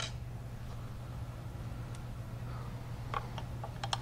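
A low steady hum with a few light clicks, one at the start, one about three seconds in and a couple near the end.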